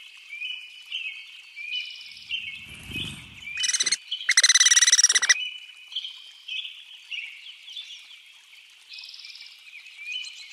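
Wild birds calling: short chirps repeat steadily about every second. A louder, harsh, pulsed call comes in about four seconds in and lasts for over a second.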